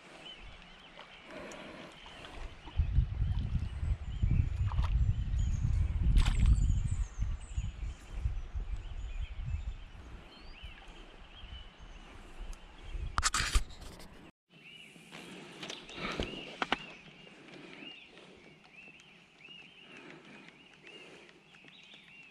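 Birds chirping over and over in the background along a river. For several seconds in the first half a heavy low rumble covers them, and there is a short loud noise a little past halfway, before it settles back to just the birdsong.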